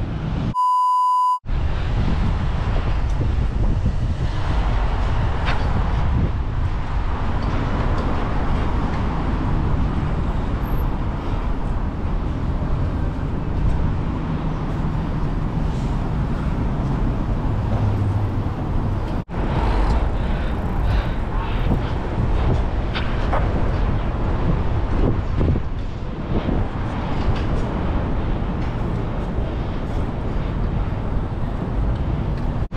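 Steady rumbling wind and road noise on the camera microphone while riding a bicycle through city streets, with traffic around. A short pure beep tone sounds about a second in, and there is a brief dropout a little past the middle.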